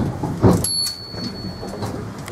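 Cabin noise of a running vintage single-deck bus: steady engine and road rumble, a loud thump about half a second in, then a thin, steady high-pitched whine for about a second that cuts off suddenly.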